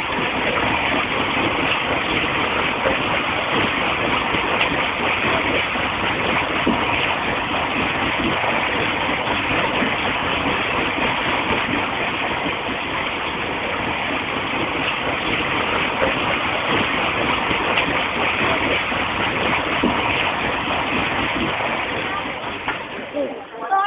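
Water pouring onto an overshot wooden mill wheel and splashing down off it: a steady rushing noise with no break.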